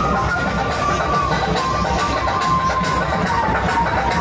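Loud dance music with a steady beat and a melody line, played through a truck-mounted DJ sound system.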